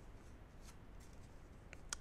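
Faint handling of oracle cards: a card lifted off the table and slid against another, with a small click near the end.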